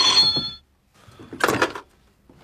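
A desk telephone's bell ringing and stopping about half a second in, followed by a short clatter about a second and a half in as the handset is lifted.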